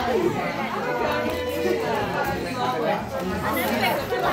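People talking: voices in conversation with general chatter around them.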